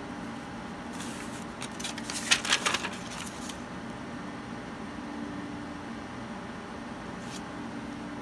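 Pen writing on a paper notepad: a run of short scratchy strokes starting about a second in and lasting a couple of seconds, over a steady low hum.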